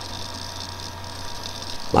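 Steady low electrical hum with faint hiss: recording background noise between spoken phrases, with a voice starting again at the very end.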